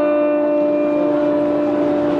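Electric guitar through an amplifier holding one chord, the notes ringing on at a steady level with no new strum.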